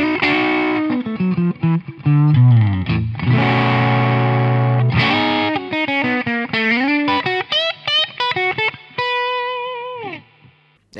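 Electric guitar, a Custom Shop '56 Les Paul on both P90 pickups, played through a Joyo Rated Boost clean boost pedal switched on into a Fender Blues Deluxe reissue tube amp: picked lead phrases with a held chord in the middle, string bends, and a note left ringing near the end. The tone is louder and a little driven, an edge-of-breakup 'off clean' sound with not a lot of gain.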